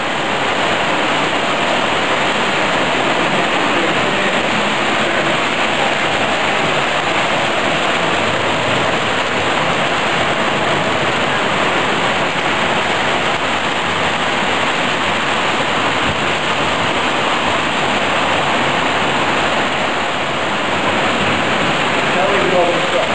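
Steady, even rushing noise with no distinct knocks or pauses: exhibition-hall background mixed with O gauge model trains running on their track.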